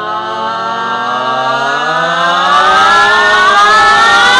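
A single held vocal note, chanted or sung, drawn out without a break, that slides slowly upward in pitch and grows louder.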